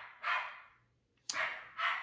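Dog barking: a few short, high barks, one near the start and two more in the second half.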